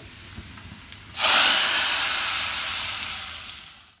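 Hot-oil tempering (tadka) of fried onion, garlic and dried red chillies poured into cooked daal: a sudden loud sizzle about a second in that slowly dies away.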